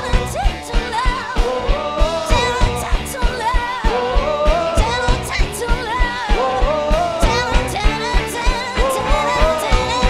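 A live band playing: a woman sings the lead melody over an archtop guitar, electric guitar, electric bass and drum kit, with a steady beat of regular low drum thumps.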